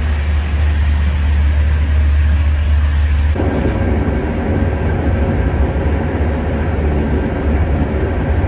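Loud train noise: a heavy, steady low rumble under a rushing hiss, heard from aboard a moving train. About three seconds in the sound changes, with more midrange rattle and roar added.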